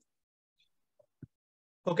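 Near silence, broken by one faint, short click a little after a second in.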